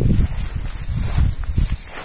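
Quarter Horse mare's hooves and a person's footsteps on grassy dirt ground as she is led at a walk, with a low rumble underneath.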